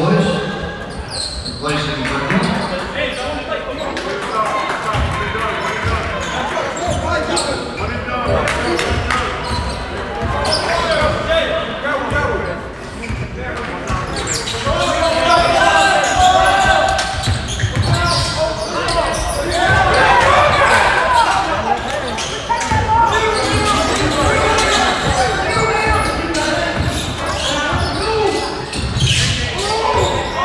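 Basketball being dribbled on a hardwood gym floor, repeated thuds echoing in a large hall, under continuous voices and calls from players and spectators.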